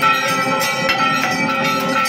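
Temple bells rung continuously for an aarti, struck several times a second over a steady metallic ringing.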